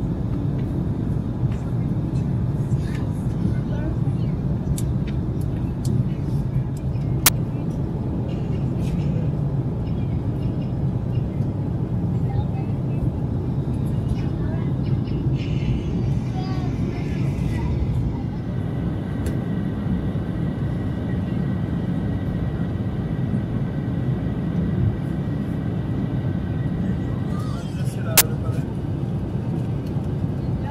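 Steady low drone inside the cabin of an Embraer E190 jet airliner in flight, from the engines and the air rushing past. Two sharp clicks stand out, one about seven seconds in and one near the end.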